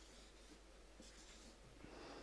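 Faint strokes of a marker pen on flip-chart paper: two short scratchy passes, one near the start and one about a second in.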